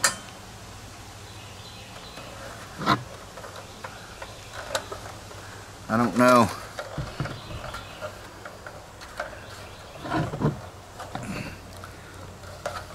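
Piezo igniter on a Mr. Heater Little Buddy propane heater being pushed to light the pilot: a few sharp clicks a couple of seconds apart, with handling of the plastic heater body.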